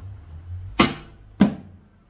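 Two sharp taps about 0.6 s apart, each ringing briefly.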